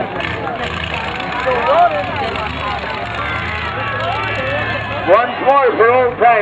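Demolition derby cars' engines running as a steady low drone, with people's voices calling over them, louder near the end.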